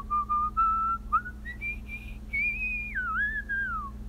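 A slow whistled tune: one clear note at a time, stepping and sliding, climbing higher about halfway through and gliding down near the end, over a faint steady low hum.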